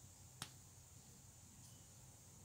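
Near silence with a faint steady hiss, broken once by a single short, sharp click about half a second in.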